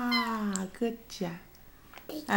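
A toddler's drawn-out whining cry, with a toothbrush in the mouth, falling in pitch and ending under a second in, followed by two short vocal sounds.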